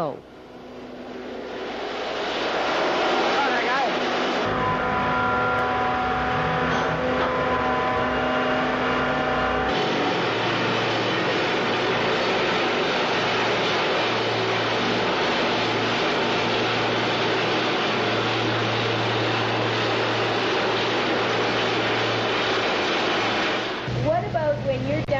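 Loud, steady underground mining machinery running in a rock tunnel. It builds up over the first few seconds, and its tone shifts abruptly about four and ten seconds in, with a faint steady whine between those points.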